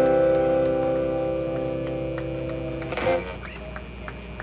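Electric guitar's final chord ringing out through the amplifier and slowly fading, ending the song. About three seconds in a short, louder strum-like burst sounds, after which the chord stops and only faint background remains.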